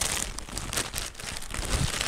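Thin plastic carrier bag crinkling and rustling continuously as hands pull and grope at its open end to fish a paper receipt out from inside.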